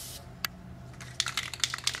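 A short hiss of aerosol spray paint that stops just after the start, then a single click and, about a second in, a quick run of small clicks and taps.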